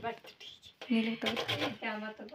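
A woman's voice talking, starting about a second in after a quieter moment.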